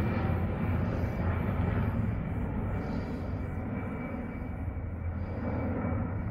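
Steady drone of a firefighting aircraft's engines overhead, slowly fading as the plane draws away.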